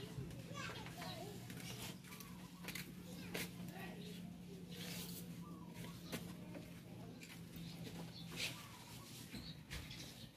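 Faint distant voices of children playing, with a few light clicks from hands working small wires and connectors at a car headlight, over a low steady hum.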